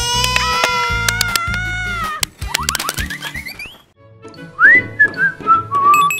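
Background music with a steady beat under cartoon sound effects: a long held, wavering tone for about two seconds, then quick rising slides. After a brief drop-out about four seconds in, a whistle-like tone swoops up and steps back down.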